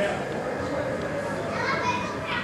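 Background chatter of people's voices, children's among them, with high voices calling out near the end.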